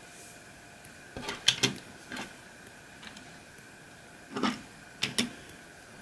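Small diecast toy trucks being handled and set down on a wooden tabletop: a few light knocks and clicks, in one cluster a little over a second in and another after about four seconds.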